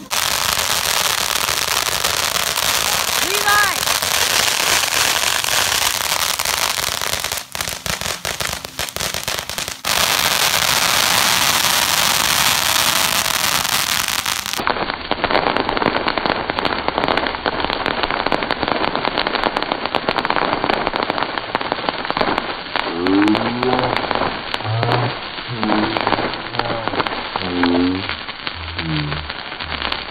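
Ground fountain fireworks spraying sparks: a continuous hiss thick with fine crackles, in several joined clips. Over the last several seconds, voices are heard above the crackling.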